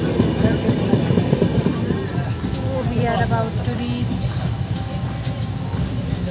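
A passenger train running, heard from inside the carriage: a steady low rumble with fast wheel clatter. Voices are heard faintly in the background midway through.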